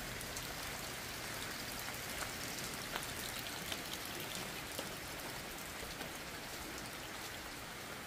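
Steady rain falling, an even hiss with faint scattered drop ticks.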